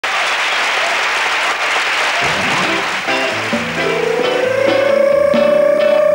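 Audience applause, then a live rock band starts the song about two seconds in: bass and picked guitar notes, with a long held note from about four seconds.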